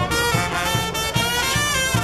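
Live brass band of trumpets and lower brass horns playing a tune, with a steady low beat about two and a half times a second underneath.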